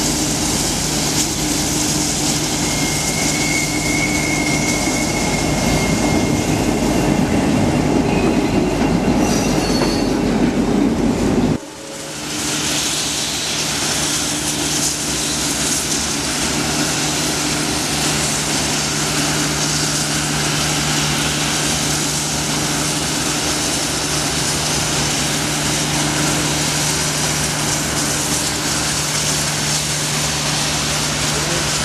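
A train running on rails, a steady noise of wheels on track. The sound breaks off abruptly about twelve seconds in and carries straight on again.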